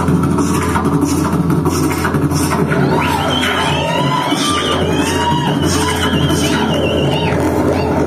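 Live rock band playing: a drum kit keeps a regular cymbal beat over a steady low bass drone. About three seconds in, a high wavering, warbling melodic line comes in on top with gliding notes below it.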